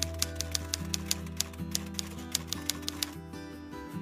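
Background music with a typewriter-style typing sound effect: rapid clicks, several a second, that stop about three seconds in.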